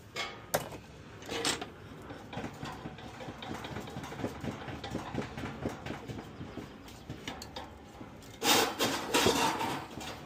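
Hand tools clinking, knocking and scraping on the hub and shaft of a furnace blower wheel as it is worked loose from the motor shaft, with a louder burst of noise, about a second long, near the end.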